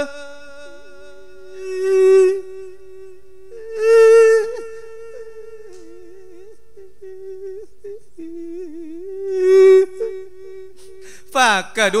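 A monk's voice holding one long, wavering hummed note into a microphone, the drawn-out melodic line of Isan sung sermon (thet lae), swelling louder about two, four and nine and a half seconds in.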